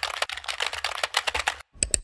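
Rapid computer keyboard typing, a fast run of key clicks that stops about a second and a half in, followed by a few sharper clicks near the end.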